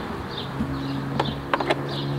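A few sharp clicks from handling the Ryobi 40V mower's plastic battery compartment, its lid and the battery key, over a steady low hum.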